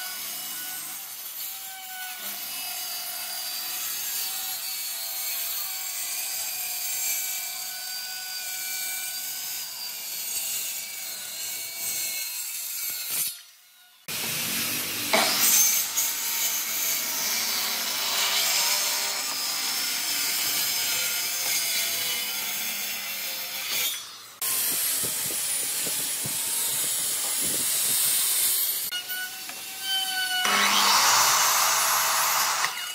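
Handheld electric circular saw running and cutting through pine boards, a steady motor whine with the rasp of the blade in the wood. The sound drops out briefly twice, a little under halfway and about four-fifths of the way through.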